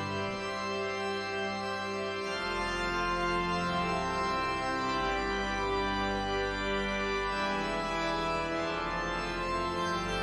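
Organ music playing slow, held chords, with a deep bass note coming in about two and a half seconds in.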